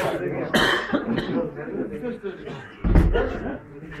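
Men's voices talking and murmuring, with a cough and, about three seconds in, a loud dull thump close to the microphone.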